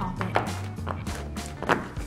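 Background music, with a few short pops from the silicone bubbles of a pop-it fidget toy being pressed by fingers.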